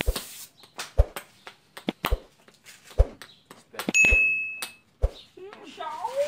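Short sharp knocks about once a second, with a single bright bell ding about four seconds in, the notification-bell sound effect of a subscribe-button pop-up.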